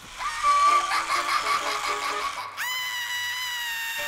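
Cartoon music and busy sound effects, then about two and a half seconds in a cartoon mermaid bursts into a long, high, steady scream of fright.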